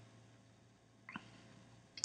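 Near silence: room tone, with one faint, brief sound about a second in.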